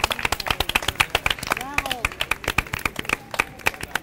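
Applause after a sung performance: a few people clapping, the claps dense but separately audible.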